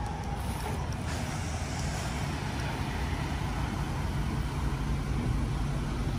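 Engine of a full-size passenger van running as it rolls slowly out through a gate and past close by, a steady low rumble growing a little louder as it nears.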